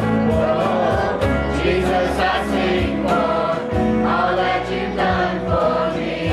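Live contemporary worship band playing a praise song: a man singing lead over strummed acoustic guitar, with women's voices singing along, bass and a steady drum beat underneath.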